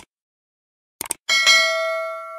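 Short mouse-click sounds, one right at the start and a quick cluster about a second in, then a bright bell ding that rings on and slowly fades. This is the click-and-notification-bell sound effect of a YouTube subscribe-button animation.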